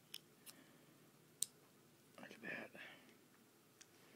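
A few small sharp clicks from handling a Spyderco Cricket folding knife, the sharpest about a second and a half in and another near the end.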